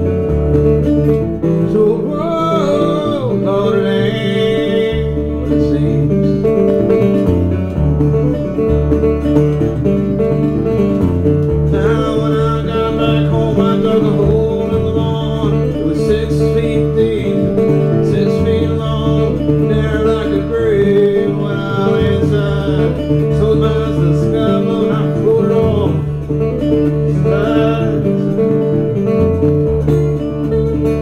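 Acoustic guitar fingerpicked in a country-blues style: a steady thumbed bass line under a busy run of plucked melody notes.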